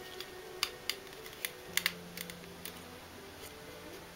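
Small hard-plastic clicks and taps, about ten of them at uneven intervals and thickest in the first three seconds, as a figure's wing is pushed and worked into its back socket.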